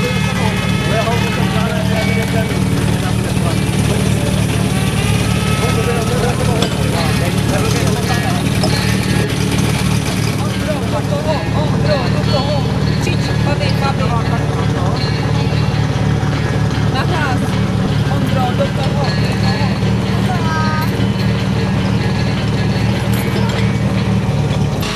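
A portable fire pump's engine idling steadily, with people talking over it.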